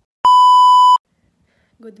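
TV colour-bars test-pattern tone: one loud, steady, high beep lasting about three-quarters of a second, used as an edit transition.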